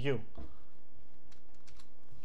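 Computer keyboard keys pressed a few times, about four quick clicks close together in the second half. They are key presses selecting and starting an entry in a boot menu.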